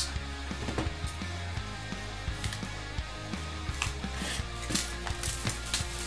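Clear plastic wrap on a trading-card hobby box crinkling and tearing, with scattered clicks and taps as the box is handled, over quiet background music.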